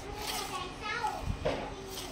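Faint voices talking in the background, over a steady low hum.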